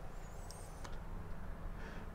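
Quiet background hum, low and steady, with a faint brief high-pitched glide about half a second in.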